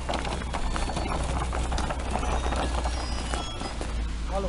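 Irregular crunching and knocking of a small plastic ride-on toy's wheels and a child's boots pushing through fresh snow, over a steady low rumble.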